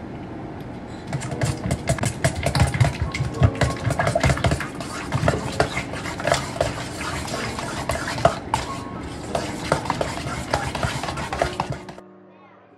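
A utensil beating seasoned egg mixture in a stainless steel mixing bowl: quick, irregular clinks against the bowl, starting about a second in and stopping just before the end.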